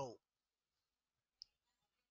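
Near silence with a single faint click of a computer mouse button about halfway through.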